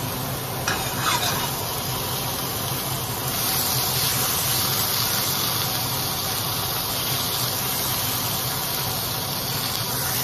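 Thin beef steak sizzling in a hot stainless steel skillet, with a brief scrape of a fork against the pan about a second in. The sizzle grows louder about three seconds in as the meat is moved.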